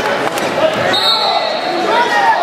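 Spectators and coaches shouting over one another in a large echoing gym, with a couple of dull thumps just after the start, typical of wrestlers' bodies hitting the mat.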